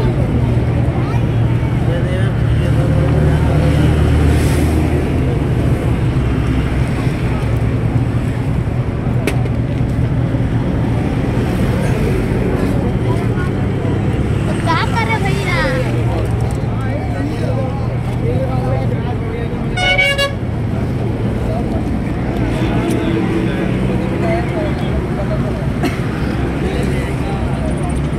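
Busy roadside with a steady low engine and traffic rumble and scattered voices, and a short vehicle horn toot about twenty seconds in.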